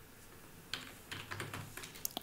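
Computer keyboard typing: a quick, faint run of keystrokes starting just under a second in.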